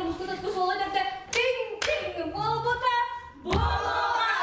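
A group of men and women singing together, with two sharp hand claps in the middle.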